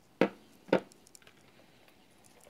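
Two sharp knocks about half a second apart, hard plastic gear set down and handled on a wooden tabletop, followed by faint small clicks of handling.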